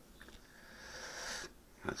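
A person breathing in softly through the nose close to the microphone, a drawn-out sniff of about a second.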